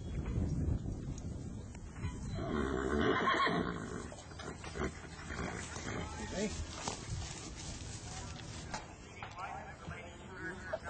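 A horse whinnying, a loud wavering call lasting about a second and a half, starting about two and a half seconds in.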